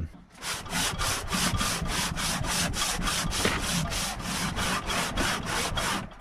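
Aluminum cylinder head from a Jeep 3.7L V6 rubbed by hand back and forth over sanding discs on a flat metal table: a rapid, even scrubbing of about five strokes a second that stops near the end. This is the final hand-lapping of the head's deck surface, done to reveal low spots under a light spatter of black paint.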